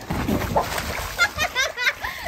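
A person getting into a swimming pool: a splash and churning of water over the first second, followed by high-pitched voices.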